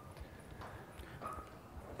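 Faint footsteps on a stage: a few soft, irregular knocks over low room noise.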